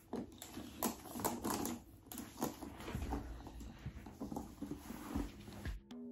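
Handling noise from a leather handbag: irregular clicks, taps and rustling as the bag and its long strap are handled, with the metal strap clasps clicking against the bag's hardware, and a few soft low bumps.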